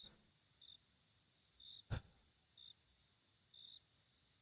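Faint crickets: short high chirps about once a second over a steady high trill. A single soft click comes about two seconds in.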